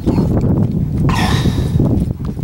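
A horse whinnying once for about a second, starting about halfway through, over a steady low rumble of wind on the microphone.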